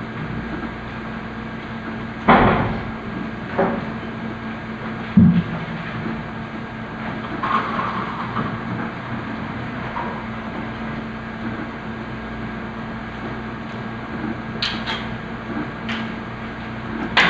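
Room noise with a steady low hum and a few scattered knocks and bumps, with a pair of sharper clicks near the end.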